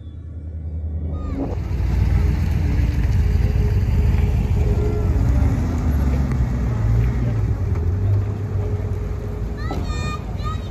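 Engines of old vehicles running with a low, steady rumble as they drive slowly past, starting about a second in; a person talks near the end.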